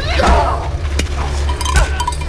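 Staged fight-scene soundtrack: voices crying out over a steady deep bass, with sharp hits or clinks about a second in and near the end.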